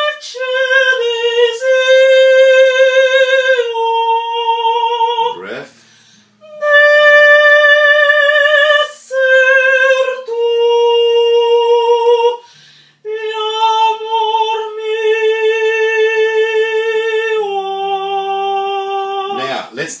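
A voice student singing slow, unaccompanied legato phrases in classical style: long held notes with a steady vibrato, stepping smoothly from one pitch to the next. The singing breaks twice for a breath, about five and twelve seconds in.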